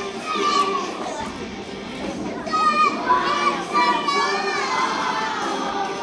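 A group of young children singing and shouting together, with music playing behind them.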